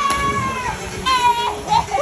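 A young woman's high-pitched screams as she jumps into a swimming pool: one long held shriek, then shorter squeals about a second in.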